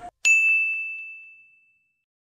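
A single high-pitched ding sound effect, one bright ringing tone that fades out over about a second and a half.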